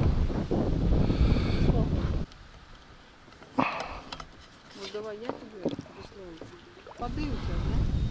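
Wind buffeting the microphone, a low rumble that cuts off suddenly about two seconds in, then a single short knock about three and a half seconds in.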